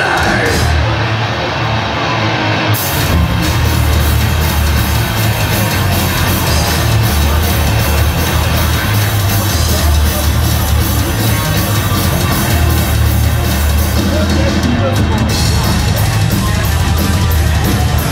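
Live death metal band playing loud distorted guitars, bass and fast drums, as heard from the crowd. The sound thickens, with heavier low end and drums, about three seconds in.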